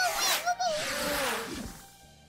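Cartoon sound effects: a rushing whoosh with a wavering, warbling cry as a skyblobber flies past, followed by tones sliding down in pitch and fading out.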